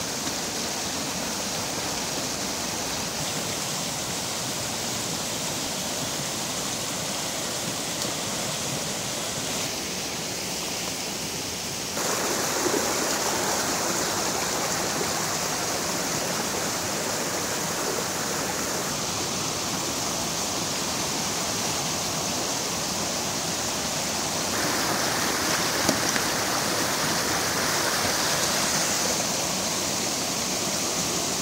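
A fast stream in spate rushing and splashing over rocks: a steady white-water rush that steps up in loudness about twelve seconds in.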